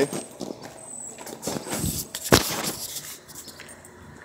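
Footsteps on pavement and handling noise from a hand-held phone as the person filming walks, with one sharp knock a little over two seconds in.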